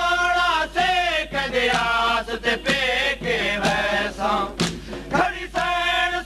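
A male reciter chanting a Saraiki noha, a Shia mourning lament, in long wavering held notes. Short thumps come in at irregular intervals, fitting with mourners beating their chests (matam).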